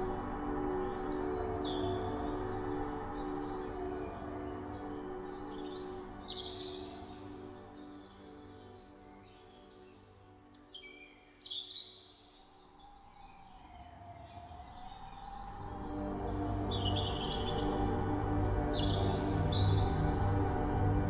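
Slow ambient background music of held, droning tones that fades down through the middle and swells back up in the last few seconds. Short bird chirps sound over it about five times.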